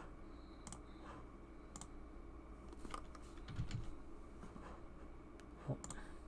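Faint, scattered clicks of a computer keyboard and mouse, a few separate strokes with a soft thump a little past the middle and a sharper click near the end.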